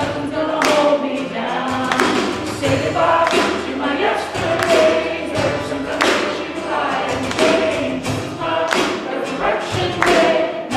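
A live church worship band playing: several voices singing a song over a strummed acoustic string instrument and a drum kit, the drum hits marking the beat.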